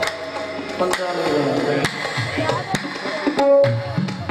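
Qawwali music: tabla drumming and harmonium under sung vocals, with sharp strokes about once a second.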